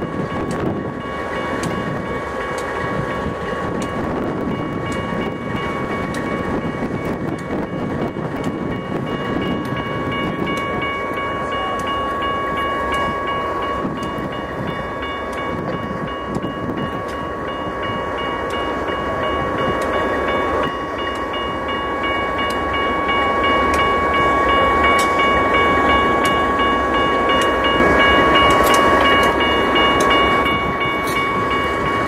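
Diesel locomotives of a standing BNSF light-engine consist, GE units, idling, with a steady high whine over the engine sound that gets somewhat louder near the end.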